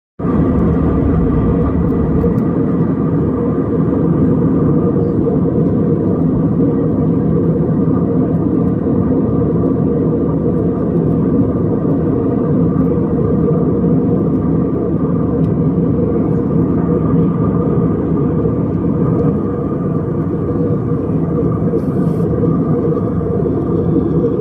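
Steady cabin noise of a passenger aircraft in flight, heard from inside the cabin: a constant loud rumble with a steady hum.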